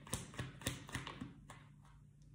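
Tarot cards being shuffled and handled in the hands: a run of sharp card clicks and snaps that thins out about a second and a half in.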